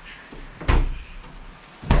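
Refrigerator door being pushed shut: two dull thumps about a second apart.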